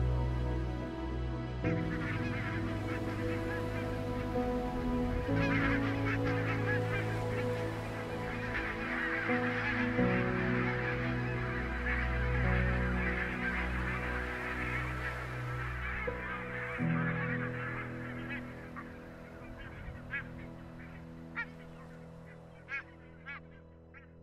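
A flock of barnacle geese calling together in a dense chorus that begins about two seconds in, then thins to a few separate calls near the end. Soft background music plays underneath.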